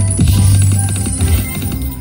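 Long Bao Bao video slot machine playing its spin music and reel sounds while the reels spin and land, with jingly chimes and quick ticks over a steady low hum.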